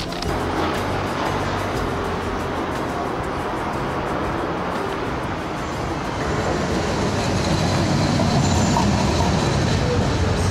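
Steady rumbling noise of a moving vehicle, growing somewhat louder in the second half.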